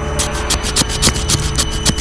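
A knife blade shaving thin curls down a cold, hard stick of wood to make a feather stick: a quick run of short scraping strokes, several a second.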